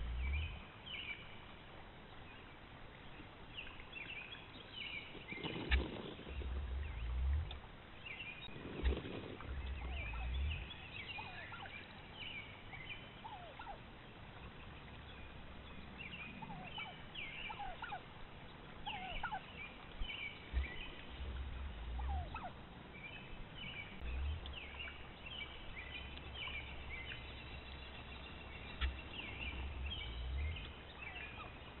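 Wild turkeys calling, heard through a trail camera's microphone: many short, high calls come one after another throughout. Several deep, low rumbles rise and fall beneath them.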